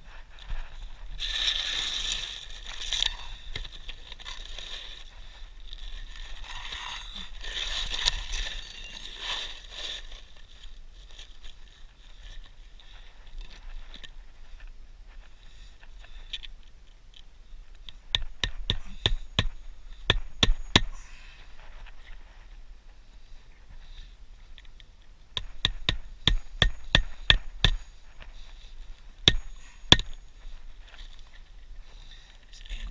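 A flat bar scraping against asphalt shingles in two stretches, then a hand hammer driving roofing nails in two quick runs of strikes, about three a second, with a last single strike near the end.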